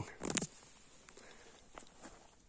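Footsteps in dry grass and stones: a few short crackles in the first half second, then a couple of faint clicks.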